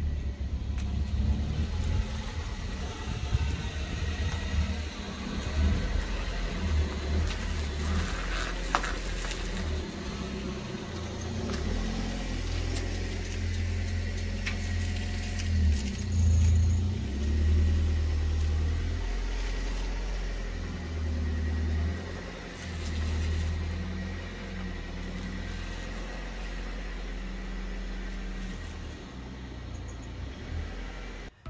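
A 1996 Honda Civic EK hatchback running at low speed as it pulls forward into a garage: a low engine rumble with a brief rise in revs a little past the middle.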